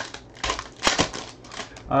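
Foil trading-card pack being torn open by hand, giving a few short crinkling rips. The loudest comes about a second in, as the cards are pulled out.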